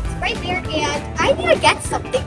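A girl's voice speaking over background music.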